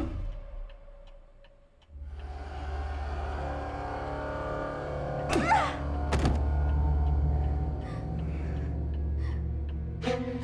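Tense film score. The sound fades almost to silence, then a low, steady drone with held tones comes in about two seconds in, and a sweeping glide with a couple of sharp hits rises out of it a little past the middle.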